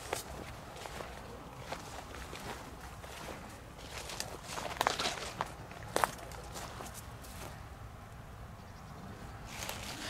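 Footsteps through long grass and undergrowth, with plants brushing past and a few sharper snaps about five and six seconds in.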